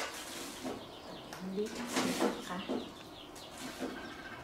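A chicken clucking briefly, once or twice, over light clicks and rustles of hands handling garlic and a plastic bag on a metal tray.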